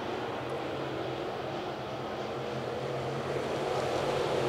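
Dirt late model race cars with GM 602 crate V8 engines running at speed around a dirt oval, a steady engine drone that grows a little louder near the end.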